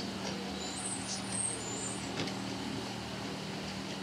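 Steady background hum in a room, a constant low tone over even noise, with a faint high whistle about a second in.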